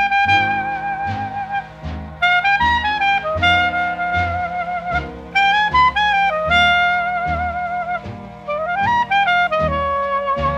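Instrumental break of a 1940s swing-band record played from a 78 rpm disc: a horn carries a wavering, vibrato melody over the rhythm section, with bass notes on a steady beat.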